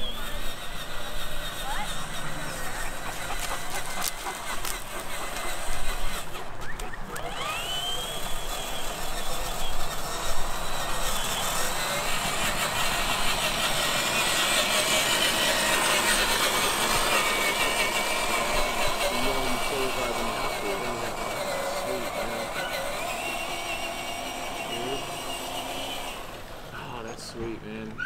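Electric motor and gear drivetrain of a Traxxas TRX-4 scale crawler whining as it drives over grass and dirt, the pitch rising and falling with the throttle.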